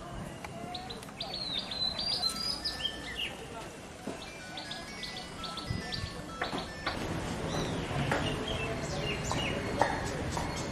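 Small birds chirping in quick, high, repeated notes, busiest in the first few seconds, over outdoor background noise.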